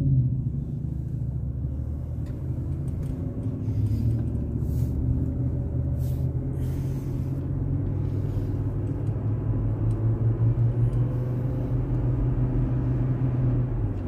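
Car engine and road noise heard from inside the cabin as the car pulls away from a stop and drives on along a multi-lane road, a steady low hum throughout.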